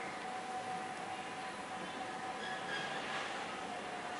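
Low, steady background hiss with a faint steady hum: room tone.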